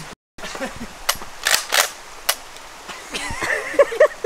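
Four short, sharp cracks from a 12-gauge pump-action shotgun, the middle two close together.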